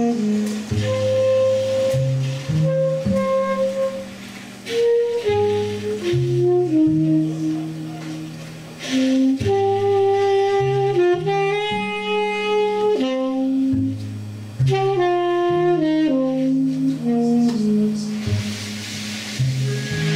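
Tenor saxophone and trumpet playing a slow melody of long held notes that step up and down, over double bass.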